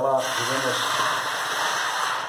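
Water poured in a steady stream from a stainless-steel kettle into a pot of cubed raw potatoes, splashing onto them as the pot is filled for boiling.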